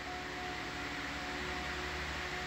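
Steady background hum and hiss with a faint, thin steady whine running through it, like ventilation or equipment noise.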